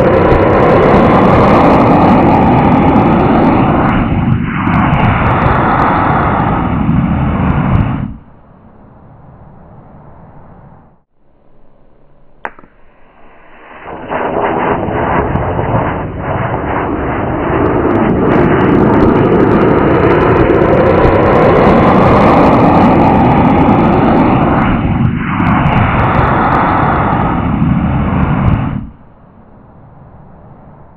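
Solid-fuel model rocket retromotor firing: a loud, rough roar that runs for about eight seconds, falls away, and comes back about fourteen seconds in for another long stretch before cutting off shortly before the end.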